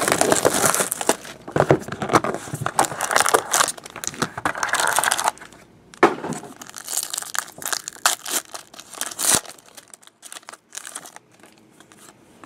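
Plastic wrapping and a foil card-pack wrapper crinkling and tearing as a box of trading cards is opened, in loud rustling bursts for about five seconds. A sharp snap comes about six seconds in, then softer rustling of the pack and cards, dying away near the end.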